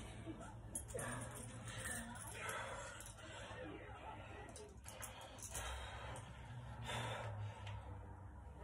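Quiet room with a low hum and a few soft rustles and breaths as resistance-band handles are picked up off a floor bar and lifted to the shoulders.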